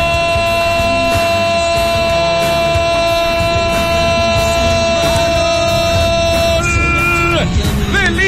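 A football radio commentator's drawn-out goal cry: one long shout held at a steady pitch for about seven seconds, breaking near the end into a shorter, higher shout, over a background music bed.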